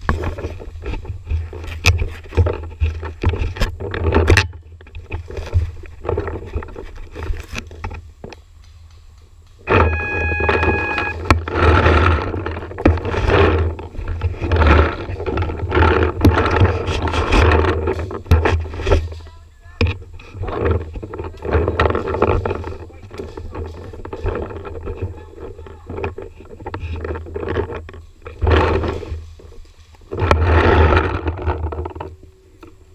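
Rough handling, rustling and rumble from a camera mounted on a game gun as the player moves. A run of sharp shots comes in the first few seconds, and a brief steady tone sounds about ten seconds in.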